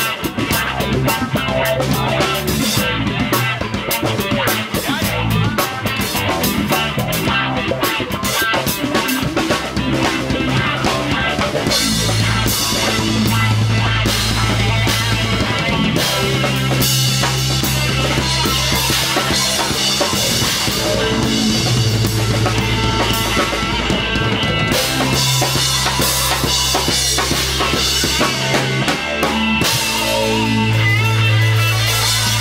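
Live rock band playing an instrumental passage on drum kit, bass guitar and electric guitar. Busy drumming leads at first; about twelve seconds in, long held low bass notes come in and repeat in blocks of a few seconds.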